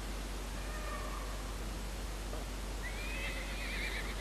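A high, quavering cry that rises and then wavers, starting about three seconds in, over a steady hiss and low hum.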